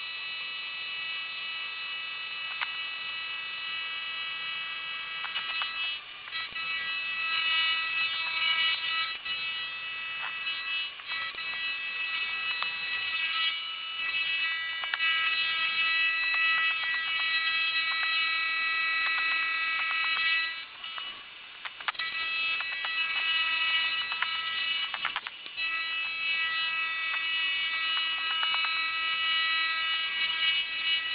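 End mill on a milling machine cutting an aluminium billet: a steady high, many-toned whine from the cut. It dips briefly several times, the longest for about a second and a half around two-thirds of the way through.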